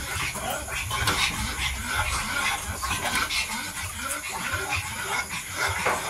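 Mini dachshund puppies eating together from a bowl: irregular wet chewing and smacking, with small clicks against the bowl.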